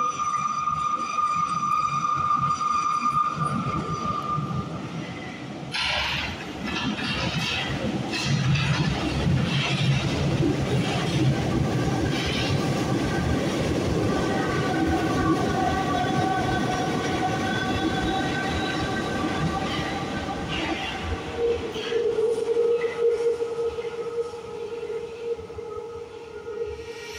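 Paris Métro line 10 train (MF 67 stock) passing through the station on the opposite track without stopping: wheel and rail rumble with a motor whine in several steady tones. A steady high tone sounds for the first few seconds, and a lower steady tone takes over near the end.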